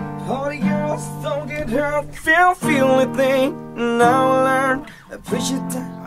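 Acoustic guitar strumming sustained chords while a voice sings a wavering melody over them, with a short pause shortly before the end.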